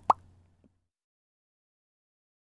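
A short edited-in pop sound effect: a quick bloop gliding upward in pitch, right at the start.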